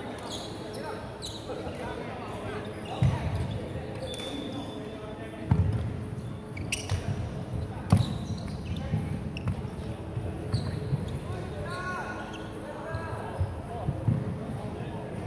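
Badminton play on a wooden sports-hall court: sharp racket hits and thuds on the floor, the loudest about three, five and a half and eight seconds in, with voices in the background.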